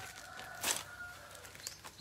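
A rooster crowing faintly, one held call, with a brief rustle about a third of the way in.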